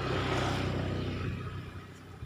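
A motor vehicle passing on the road, its engine loudest at first and fading away over about a second and a half.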